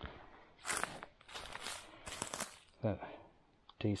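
Footsteps crunching on a sandy, gravelly bush track strewn with dry leaves and twigs, a few steps in a row through the middle.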